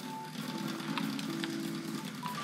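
Hornby R.350 Mallard 00-gauge model locomotive running at a slow crawl on the track under Hornby Zero 1 control, with soft held notes of background music underneath.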